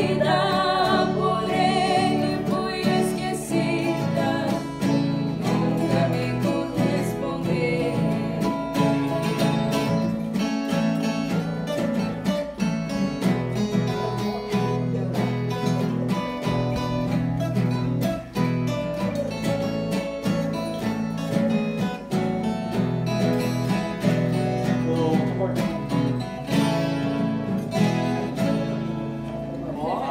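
Viola caipira and acoustic guitar playing a Brazilian country (caipira) song, two women singing in duet over them for the first few seconds, then an instrumental passage of picked strings.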